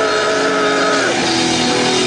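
Live rock band playing loud and steady, with guitar and drums; held notes change to a new chord about a second in.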